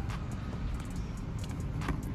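Steady low outdoor rumble, with a couple of faint clicks, one at the start and one near the end.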